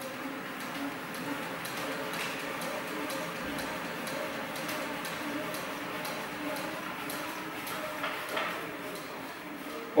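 HMS H1833-i elliptical cross-trainer pedalled at a brisk interval pace, running quietly and smoothly, with regular light ticks about twice a second.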